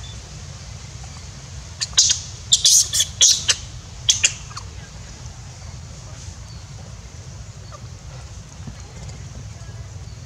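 Young long-tailed macaque squealing: a quick run of about ten short, shrill squeaks starting about two seconds in and ending near the middle, over a steady low rumble.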